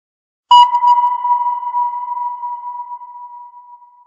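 A single sonar-style ping sound effect: one clear high tone struck about half a second in, ringing and slowly fading away.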